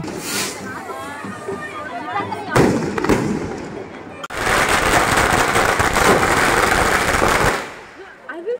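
Fireworks going off: one sharp bang about two and a half seconds in, then about three seconds of dense, rapid crackling that stops suddenly. Crowd voices are heard under the opening seconds.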